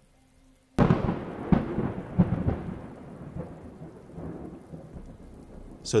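Thunderclap sound effect: a sudden crack about a second in, then a rolling rumble with a few renewed swells that fades over several seconds.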